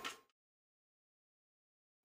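Silence: the sound track drops out completely after a brief fading tail of kitchen clatter at the very start.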